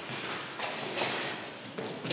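A few soft, irregular thuds and footsteps on a wooden board floor, from people stepping and moving through a leg exercise.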